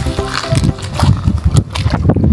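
Background music stops about half a second in, followed by irregular footsteps of water shoes splashing through shallow water over wet pebbles and gravel.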